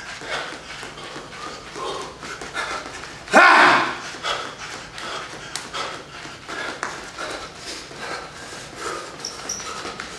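A man's short shout, a whoop rising in pitch, about three and a half seconds in, the loudest sound here. Around it are scattered quieter short vocal sounds and the knocks of dance steps on a wooden floor.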